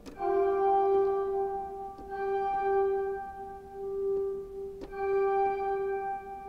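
A pipe organ sounding the same held note three times, each struck from a velocity-sensitive keyboard and sustained for two to three seconds. How hard the key is struck sets how many stops sound, so the tone's loudness and brightness differ from one strike to the next.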